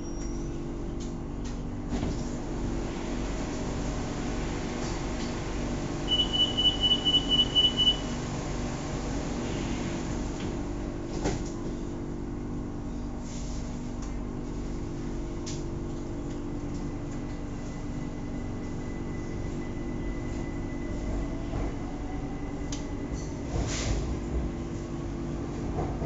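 Bangkok BTS Skytrain car standing at a station, its equipment giving a steady hum. About six seconds in, a rapid series of high beeps runs for about two seconds, the warning that the doors are closing, and a single knock follows a few seconds later. Near the end a faint rising whine begins as the train starts to move off.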